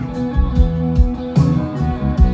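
Live rock band playing the instrumental intro of a song: electric guitar and bass over a drum kit keeping a steady beat, with no vocals.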